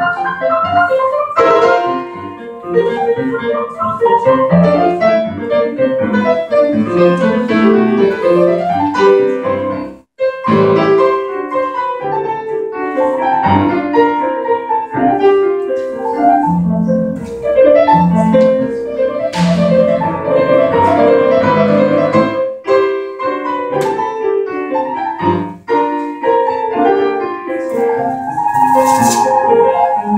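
Grand piano being played: a busy piece of many quick notes, broken by a brief pause about ten seconds in.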